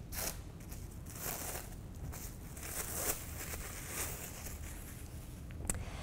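Plastic wrap crinkling and rustling as it is peeled off a disc of chilled pie dough: soft, irregular crackling, with one sharp tick near the end.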